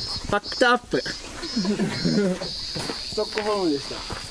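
A high-pitched insect chirr in short repeated pulses that settles into a steady, unbroken trill about halfway through, under people's voices.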